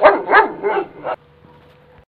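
A dog whining and yelping in about four short calls that rise and fall in pitch, cutting off abruptly a little over a second in.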